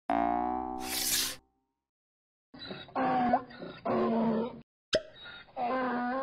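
Cartoon sound effects: a springy boing that ends in a short pop about a second in. After a brief gap come several short, pitched cartoon vocal sounds in a row.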